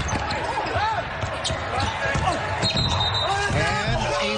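Basketball dribbling and bouncing on a hardwood court in a near-empty arena, with voices calling out over it. A short, sharp high whistle sounds about two-thirds of the way through, a referee's whistle stopping play.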